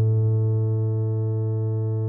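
Electronic music: one sustained synthesizer chord of steady, pure tones, held unchanged and easing down slightly in level.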